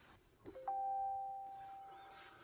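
Amazon Echo Auto's startup chime as it powers on from a USB port: two rising notes about half a second in, the higher one ringing on and slowly fading.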